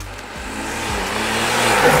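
BMW M140i's turbocharged 3.0-litre straight-six, breathing through a Remus OPF-back exhaust, accelerating toward the microphone. The engine note rises in pitch, then levels off, and grows steadily louder as the car draws close.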